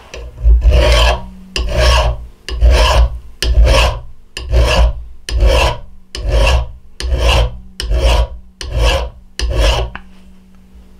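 Hand file rasping across the spine of an Old Hickory steel knife clamped in a vise, about eleven strokes at roughly one a second, all filed in one direction. The filing squares the spine to a 90-degree edge and raises a burr for scraping a ferro rod.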